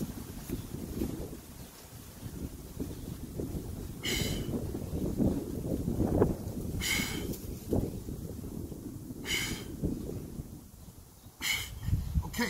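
A man breathing out hard in short hissing puffs while doing push-ups, four times, about every two to three seconds. Wind rumbles on the microphone underneath.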